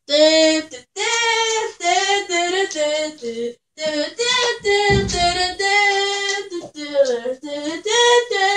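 A child singing unaccompanied, one voice with long held notes and short breaks between phrases. A brief low rumble sounds under the singing about five seconds in.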